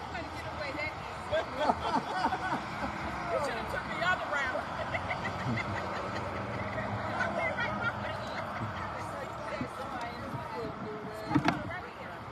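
Scattered, indistinct chatter and laughter from a small group of people, over a steady hum of traffic on the road. A short thump near the end.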